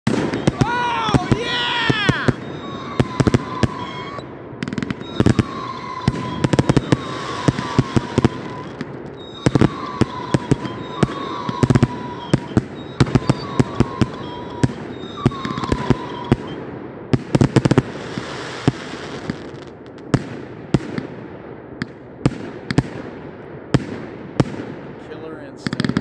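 Consumer fireworks cakes firing: a long, uneven string of sharp shots and bursts, often several a second. Short gliding tones sound in the first two seconds, and brief repeated tones run through the first half.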